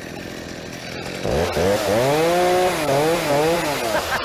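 Gas chainsaw engine revving: about a second in it rises sharply in pitch, then swells up and down several times as the throttle is worked.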